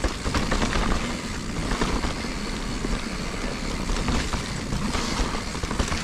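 Full-suspension mountain bike (Giant Reign 29er) rolling downhill on a dirt and root trail: a steady, uneven rumble of the tyres on the ground with the bike's rattle.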